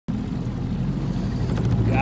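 40-horsepower outboard motor running steadily, pushing the boat along at speed, with a hiss of water and wind.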